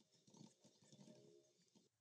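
Near silence, with a few very faint computer keyboard clicks as a command is typed.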